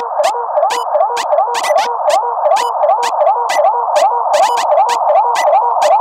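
Electro house breakdown with the kick drum and bass dropped out: a thin, repeating synth riff with the low end cut, over steady hi-hat ticks.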